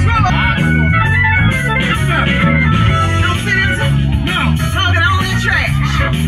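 Live band playing an instrumental passage, a sustained organ-like lead over a steady, repeating bass line.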